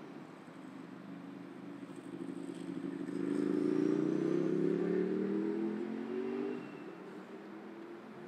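A motor vehicle's engine accelerating past, its pitch rising steadily as it grows louder, then dropping away suddenly with about a second and a half to go, over steady traffic hiss.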